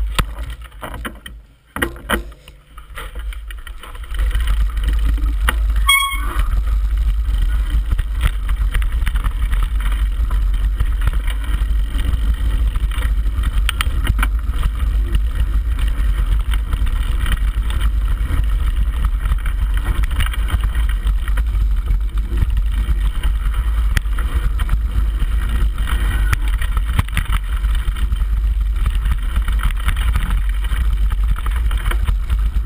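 Wind rumbling on an action camera's microphone, mixed with the rattle of mountain-bike tyres on a dirt and gravel singletrack during a fast descent. The noise starts loud about four seconds in and stays steady, with a brief high-pitched tone about six seconds in.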